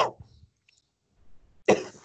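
Speech over a video call. One word ends, there is a pause of about a second and a half, then a sharp, noisy vocal onset begins the next word of Arabic reading ('ibara').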